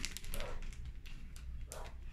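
Plastic packet of soft-plastic lures being opened by hand, giving a few short, scattered crackles and rustles.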